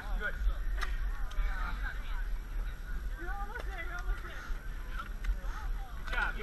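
Indistinct voices of several people talking and calling out over a steady low rumble, with a few brief clicks.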